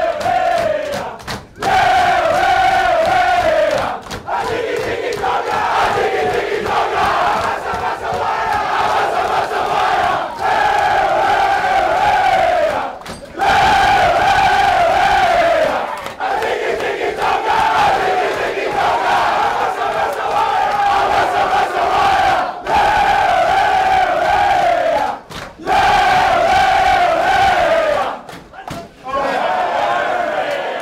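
A large group of men chanting loudly in unison, a short falling phrase repeated over and over with brief breaks between.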